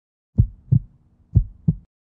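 Heartbeat sound effect: two beats about a second apart, each a low double thump (lub-dub).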